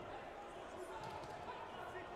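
Indistinct voices echoing through a large sports hall, with dull thuds mixed in.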